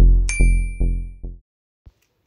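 End of an electronic intro jingle: a deep bass note struck at the start repeats and fades away over about a second and a half. A bright bell ding sound effect rings out about a third of a second in.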